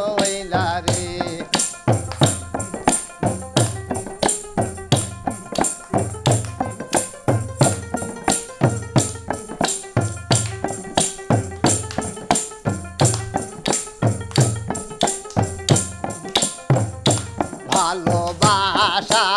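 Instrumental stretch of a Bengali Baul jikir song: hand drum, frame drum and tambourine jingles keep a steady, fast, driving beat, with sustained pitched notes from a long-necked stringed instrument over it.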